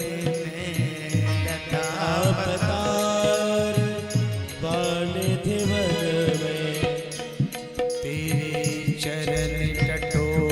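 Devotional Hindu chant-style music: a male voice singing a bhajan over instrumental accompaniment with a bass line and percussion.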